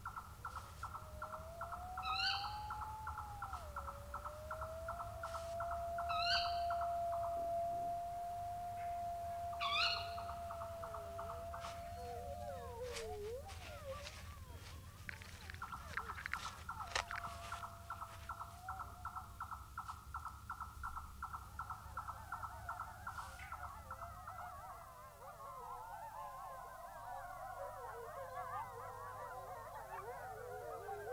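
A wolf howling one long note that rises at first and then holds level for several seconds, over a fast, even pulsing chirr and a few short chirps. Near the end several wavering howls overlap in a chorus.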